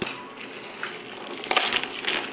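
Clear plastic shrink-wrap being torn and crinkled off a cardboard jigsaw puzzle box, with a louder rustle about one and a half seconds in.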